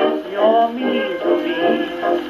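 A 1929 dance-band slow fox-trot played from a 78 rpm record on a 1928/29 Columbia Vivatonal Grafonola 117-A acoustic gramophone. The music has a thin tone with little bass or treble, and a melody line with sliding notes.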